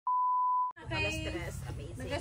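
A single steady electronic test-tone beep, the kind played with TV colour bars, lasting about two-thirds of a second and then cutting off suddenly.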